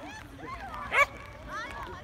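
A dog barks once, sharply and loudly, about a second in, amid people's voices calling.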